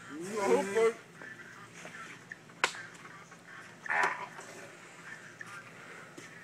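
A man's strained, wavering vocal cry in the first second, a sharp click a little over two and a half seconds in, and a short harsh burst about four seconds in.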